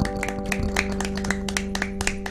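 A chord held on a Nord Electro 6 stage piano, ringing steadily, while a few people clap in scattered, uneven claps.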